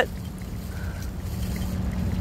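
Steady low outdoor rumble with a faint, even hum underneath and no distinct events.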